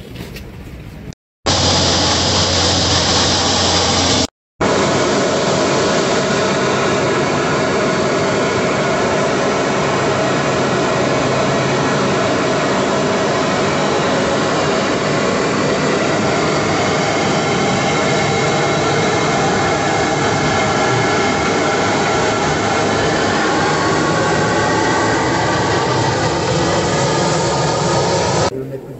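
Aircraft engines running steadily, heard from inside the cargo hold of a military transport plane with its rear ramp open: a loud, even rush with several steady whining tones. The sound cuts out briefly twice in the first few seconds, where clips are joined.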